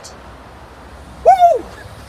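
A single short animal call over faint outdoor background noise: one loud cry a little past halfway through, rising then falling in pitch.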